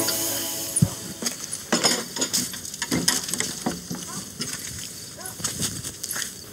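Quiet night-time scene ambience of scattered small knocks, clicks and rustles, with a low thump about a second in. Two brief clusters of short chirping calls come about two seconds in and near five seconds.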